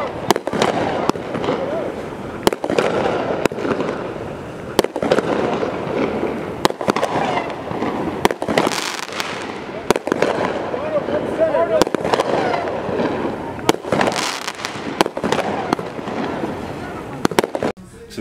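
Fireworks going off overhead: sharp bangs about once a second, irregularly spaced, over excited voices.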